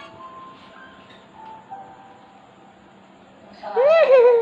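Faint music playing from a phone, a few soft held notes. Near the end, a loud high-pitched vocal squeal that rises and then falls in pitch.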